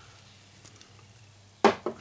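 Faint pouring and fizzing as the last of a canned beer runs into a glass and the foam settles, followed near the end by a man starting to speak.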